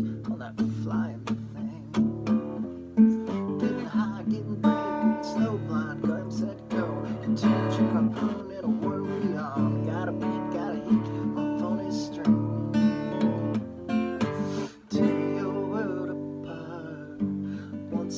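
Steel-string acoustic guitar strummed in a steady rhythm, playing rock chords, with a short break in the strumming about fifteen seconds in.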